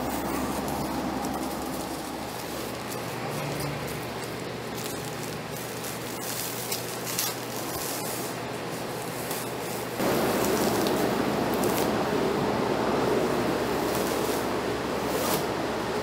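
Masking tape being peeled off car paint, a light crackling hiss. About ten seconds in, a louder steady hiss of compressed air starts, blowing polishing dust off the car.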